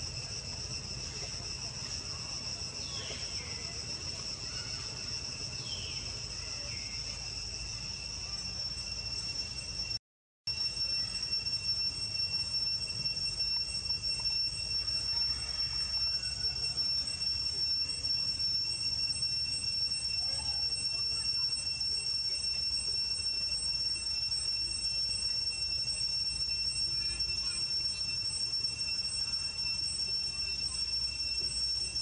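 Steady high-pitched drone of insects, two constant tones held without a break except for a brief cut-out about ten seconds in, after which it resumes slightly louder.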